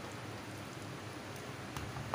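Soft, steady wet crackle of a hand rubbing thick spice paste over a raw leg of lamb on a plastic tray, with a few faint clicks.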